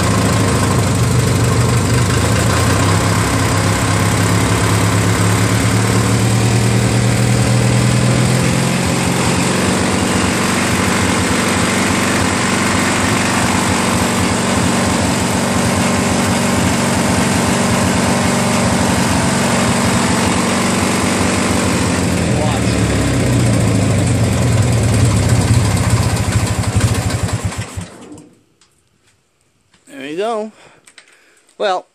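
Briggs & Stratton opposed-twin engine on a Murray garden tractor running at part throttle on a rebuilt Nikki carburetor, its speed shifting a couple of times before it cuts off near the end. It runs not as smooth as expected, which the owner puts down to the governor linkages needing adjustment rather than the carburetor.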